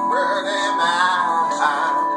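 Electronic keyboard playing a solo melody in a voice-like synth tone, the notes wavering in pitch, over held chords.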